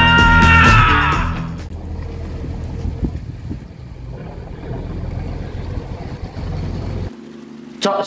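The tail of a music sting, then a fishing boat's engine running with a low rumble and churning water as the boat manoeuvres close in. The rumble cuts off suddenly about seven seconds in.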